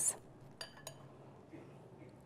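A metal spoon clinking faintly twice against dishware while cherry tomatoes are spooned onto a plate, the clicks about a quarter second apart with quiet between.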